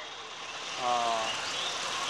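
Steady outdoor background noise, with one short pitched sound, slightly falling in pitch, lasting about half a second near the middle.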